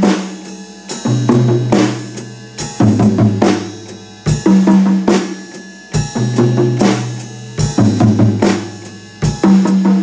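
Drum kit playing a sixteenth-note groove that moves between the toms and the snare, over quarter notes on the ride cymbal, eighth notes on the foot-played hi-hat and the bass drum. The pattern repeats about every second and a half, each time with a higher tom ringing first and then a lower tom.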